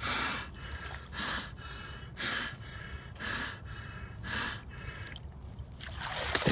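Sharp, heavy breaths drawn through a snorkel by a swimmer lying face-down in icy water, five in a row at about one a second.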